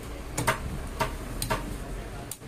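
Cleaver chopping chicken pieces on a wooden tree-trunk chopping block: about five sharp knocks, two of them in close pairs.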